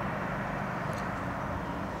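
Steady hum of distant city road traffic, with no distinct events standing out.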